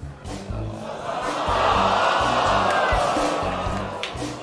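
Background music with a steady bass line. About a second in, studio audience noise swells up over it and dies down near the end.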